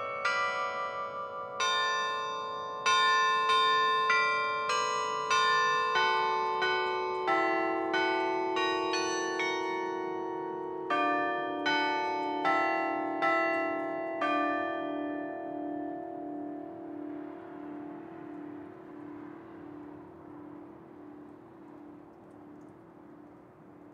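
Carillon bells playing a tune, one struck note after another with long overlapping rings, the notes stepping lower. The last note is struck about two-thirds of the way through, and its ring fades away with a slow wavering in the lowest tone.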